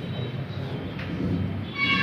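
Handling noise of a headset microphone being fitted onto the speaker: low rumble and rustle through the PA, with a faint knock about a second in and a brief high ringing tone coming in near the end.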